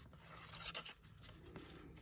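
Faint rustling and sliding of cardboard trading cards as they are thumbed off a hand-held stack one by one, paper surfaces rubbing against each other.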